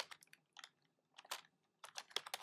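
Typing on a computer keyboard: a handful of faint, irregular keystrokes.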